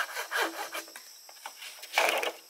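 A frame saw cutting a green bamboo pole by hand: a few rasping back-and-forth strokes in the first second, then the sawing stops. A sharp knock of bamboo comes right at the end.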